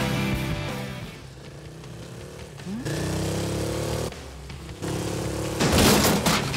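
Rock music fades out over the first second. Then come sparse soundtrack sounds: a short rising glide, two spells of a steady humming tone, and a loud, sudden whoosh-like burst near the end.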